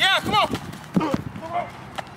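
Several short, pitched shouts of encouragement from onlookers over the quick footfalls of a sprinter pushing off on hard dirt.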